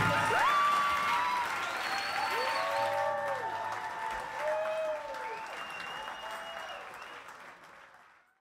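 Concert audience applauding and cheering, with shouts and whistles rising and falling over the clapping, fading out near the end.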